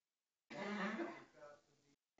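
A person clearing their throat: one voiced, rasping sound of about a second and a half, starting after half a second of silence and fading out.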